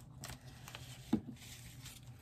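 Faint handling of paper and a small plastic glue bottle: a few soft taps and rustles.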